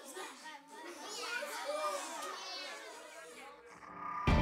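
Several children's voices chattering and calling out together, fairly quiet, with high voices rising and falling in pitch.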